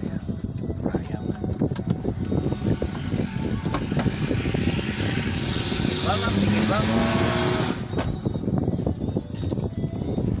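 Car cabin noise while stopped with the engine running: a steady low rumble, with a hiss swelling for about three seconds in the middle and a few brief voice-like sounds a little past halfway.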